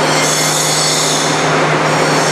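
Forrest Model 480i horizontal band saw running, a steady low hum under a loud, high hissing whine.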